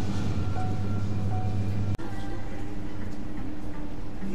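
Supermarket background sound: a steady low hum with faint music under it, broken by a sudden brief dropout about halfway through, after which the hum is gone and only the store's room noise remains.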